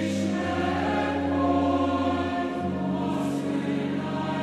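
A choir singing slow, held chords, religious music; the lowest note changes about two and a half seconds in.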